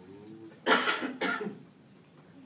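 A person coughing twice in quick succession.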